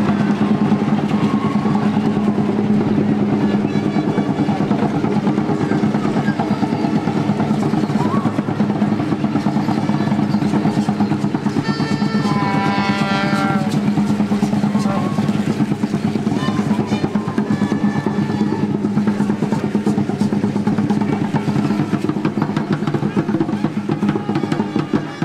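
Fast, steady drumming from the drum group of an Aztec dance troupe marching in the crowd. A long falling call rises above it about halfway through.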